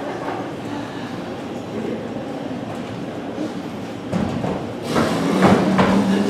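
A performer imitating a motorbike engine with his voice, starting about four seconds in and getting louder.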